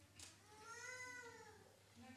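A faint, high-pitched vocal sound held for about a second, rising and then falling in pitch, in an otherwise near-quiet hall; a brief click comes just before it.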